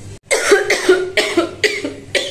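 A woman coughing hard in a rapid fit of about seven short coughs, starting a quarter second in; her throat is sore and hoarse.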